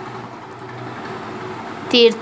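Steady, even background noise with a faint low hum that fades out about three-quarters of the way in; a voice starts again right at the end.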